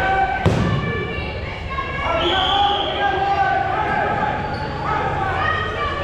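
A foam dodgeball hits hard once about half a second in, with the shouts and calls of players going on around it, all echoing in a large gymnasium.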